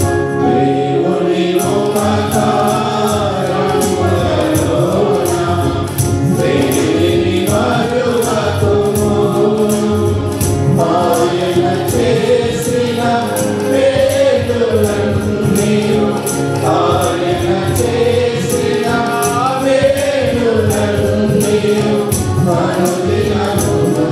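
A mixed choir of men's and women's voices singing a Telugu Christian song in unison through microphones, over music with a steady beat.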